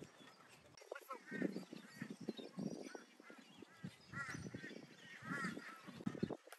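Bird calls: short arched calls repeated several times, a few seconds apart.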